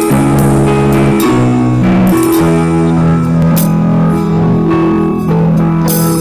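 Live band playing an instrumental passage: held guitar notes over a bass line, with a few drum and cymbal hits.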